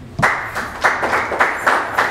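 Audience applauding, starting about a quarter second in, the claps falling into a steady rhythm of about three to four beats a second.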